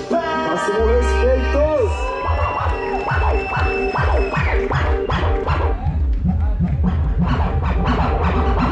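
DJ music through a PA: a beat with turntable scratching, fast back-and-forth record strokes that take over from about two seconds in.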